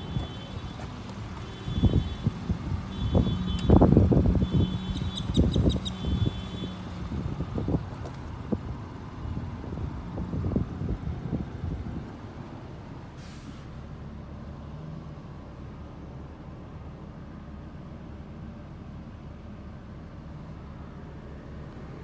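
Honda Odyssey power sliding door opening, its warning chime sounding in repeated short high beeps over the first several seconds, amid loud irregular thuds and rumble. After about twelve seconds only a steady low hum remains.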